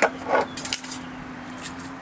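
Twist pepper grinder being turned, giving short bursts of dry grinding clicks over a faint steady hum.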